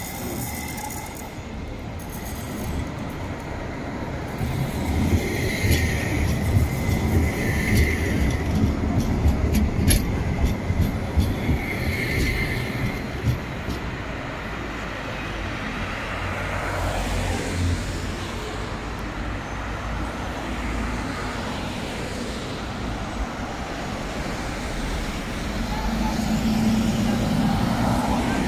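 City street traffic: a tram moves along its track near the start, then cars drive past on the road, the rumble of engines and tyres swelling as they come closer.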